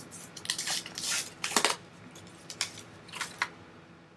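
Plastic wrap being ripped open and crinkled around a packaged trading card, in a series of short, crackly bursts.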